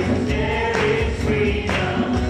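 Live worship band playing: several men and women singing together into microphones over keyboard and acoustic guitar, with a steady beat about once a second.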